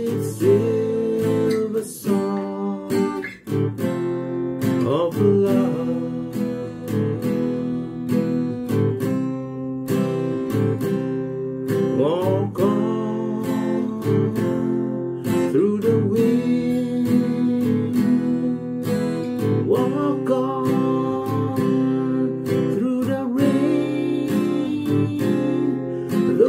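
Steel-string acoustic guitar strummed in a slow song accompaniment, changing through B-flat, F and F minor chords, with a man's voice singing the melody over it at times.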